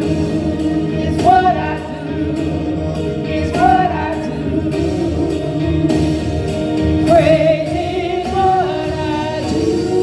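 Gospel music with choir singing: voices hold long, wavering notes in phrases that rise and fall every couple of seconds over a steady sustained accompaniment.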